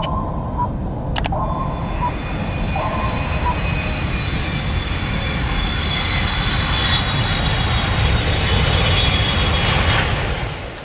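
Sound effects for an animated title sequence: a few short electronic beeps in the first few seconds, under a jet-like rumble that swells steadily louder.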